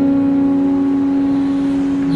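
Live street-band music holding one long, steady sustained note, with no strums or cajon hits under it.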